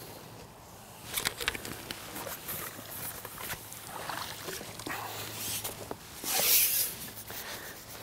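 A landing net is drawn in and lifted from the water, with scattered clicks and rustles of handling. A short loud splash of water comes about six seconds in.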